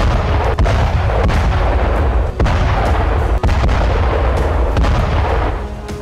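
Explosions: a sustained heavy rumble with several sharp blast cracks going off through it, easing off near the end.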